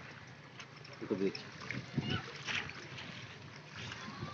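A few short spoken words and faint voices over a low, steady outdoor rumble.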